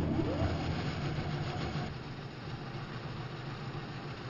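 Large woodworking band saw running: a steady mechanical whir over a low hum, loudest in the first second and then settling.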